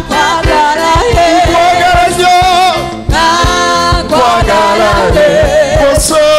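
A man singing a gospel worship song into a microphone, holding long wavering notes, over a live band with a steady kick-drum beat.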